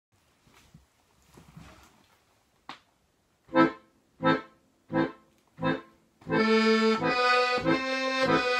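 Weltmeister piano accordion: after faint rustling and a click, four short detached chords about two-thirds of a second apart, then sustained chords and melody from about six seconds in.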